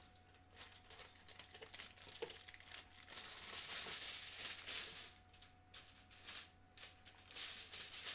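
Crinkly rustling of a plastic bag being handled and rummaged through, with scattered small clicks, loudest about three to five seconds in.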